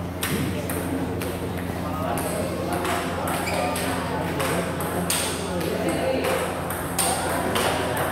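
Plastic table tennis ball bouncing and being tapped, a string of sharp, irregular clicks, over a steady low hum and background chatter.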